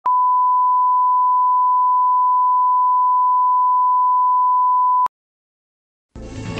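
A 1 kHz reference tone played with colour bars: one steady pure beep at one pitch, cutting off suddenly about five seconds in.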